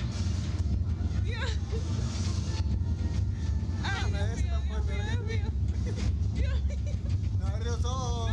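People's voices, short murmured words and drawn-out vocal sounds, over a steady low rumble.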